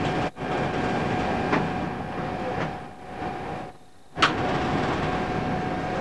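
Steady ventilation and machinery hum of a submarine's interior, with a constant mid-pitched tone running through it. The hum cuts out briefly twice, and after the second, quieter gap it comes back with a sharp click about four seconds in.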